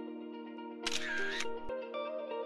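Plucked-string background music, with a short camera-shutter sound effect about a second in.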